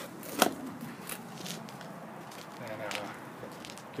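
Handheld-camera handling noise and footsteps on a concrete path: one sharp knock about half a second in, then scattered small clicks and steps.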